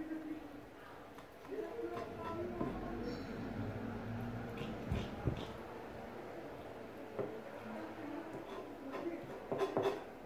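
A kitchen knife scraping and tapping against a plastic cutting board while a sardine's guts are scraped out, with a few sharp knife clicks, most of them near the end. A quiet voice is heard under it.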